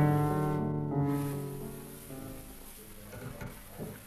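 Recorded piano music played back at a steady, constant speed, free of wow. Held chords change about once a second and die away over the last two seconds.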